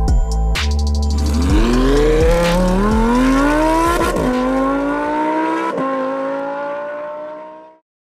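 Sports car engine accelerating hard, its pitch climbing and dropping sharply at two upshifts, about four and six seconds in, then holding steady. It is layered over electronic music, and both fade out together near the end.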